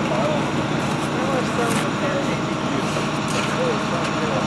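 A vehicle engine idling steadily, with faint voices talking in the background.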